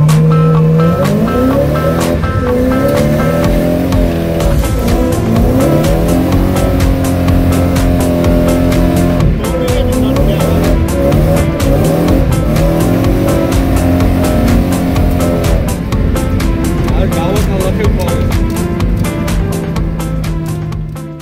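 A car engine revving hard, its pitch climbing and then dropping back again and again as it runs through the gears, with stretches of steady running between.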